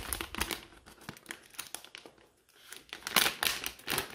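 Glossy plastic packaging bag crinkling and rustling as hands pull it open. There are crackles at first, a quieter pause, then a louder burst of crinkling about three seconds in.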